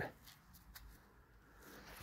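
Near silence with faint rustling and a few light clicks from a gloved hand turning a small glass bottle.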